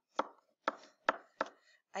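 A stylus knocking against a writing surface as handwriting strokes are drawn: four short, sharp taps in under two seconds.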